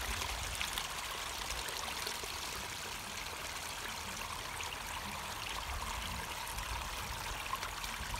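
Water of a pumped, pondless garden stream running steadily over small ragstone falls and through shallow rock pools, trickling and splashing.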